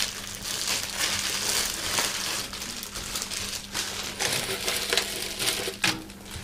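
Continuous irregular rustling and crinkling of items being handled and sorted through, with a faint steady low hum underneath.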